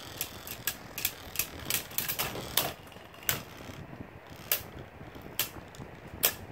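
Two Beyblade spinning tops, Galeon and Galux, clashing in a plastic stadium: a quick irregular run of sharp plastic clacks for the first few seconds, then a few spaced hits.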